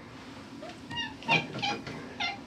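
A colorpoint cat meowing: three short, high calls in the second half as it is picked up off its wall shelf.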